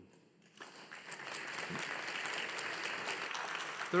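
Audience applauding, starting about half a second in and going on steadily.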